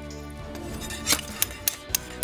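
Hand tools, a hammer and a scraper, striking the floor and chipping off flakes of green paint: about four sharp metallic clinks in the second half, over steady background music.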